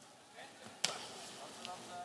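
A single sharp smack a little under a second in, a strike landing in an MMA bout, followed by a fainter tap near the end.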